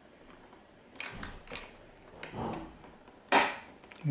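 Several plastic-and-metal clicks and knocks as an AMD Wraith Prism cooler's retention clip is pushed down over the AM4 mount's hook, ending in one loud sharp snap about three seconds in as the latch catches over the hook.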